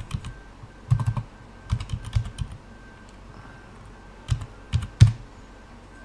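Computer keyboard typing: short runs of keystrokes about one and two seconds in as an IP address is entered, then a few separate, louder clicks near the end.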